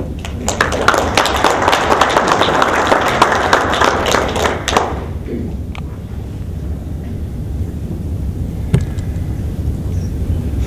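A roomful of dinner guests applauding the end of a toast: about four seconds of clapping that starts half a second in and dies away just before the middle. Low room rumble and murmur follow, with a single sharp tap near the end.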